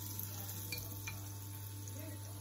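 Hot oil in a shallow frying pan sizzling steadily around small test drops of tempura batter, with a couple of faint ticks near the middle. The drops frying this way show that the oil is almost hot enough to cook the battered prawns.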